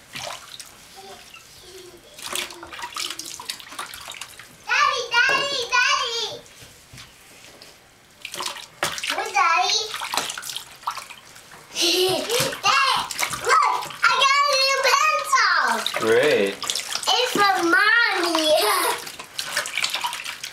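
Bath water splashing and dripping as a baby is washed by hand in an infant bath seat. A child's high-pitched voice comes in briefly about five seconds in and again near nine seconds, then for a longer stretch in the second half.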